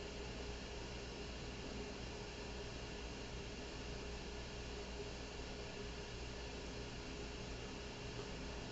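Faint, steady hiss with a thin low hum and no distinct events: the background noise of a small room.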